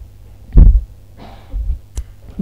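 A single low thump about half a second in, then a softer rustle about a second later, over a steady low electrical hum on the microphone.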